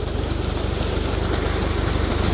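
Old '475' four-cylinder tractor engine running steadily at very low throttle, with an even low beat, while it drives a belt-driven irrigation pump. Under it is the rushing noise of a heavy six-inch stream of water pouring from the pump's outlet pipe.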